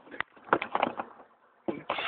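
Handling noise from plastic tubing and a plastic bottle being picked up and moved: a few light clicks and knocks in the first second, then a brief quiet.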